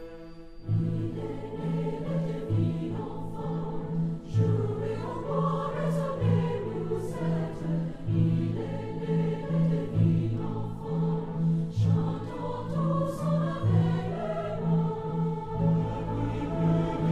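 A choir singing a Christmas carol, the piece starting just under a second in.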